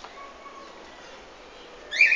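Quiet outdoor background with a small bird calling: a faint thin note about a quarter second in, then a short, brighter high chirp at the end.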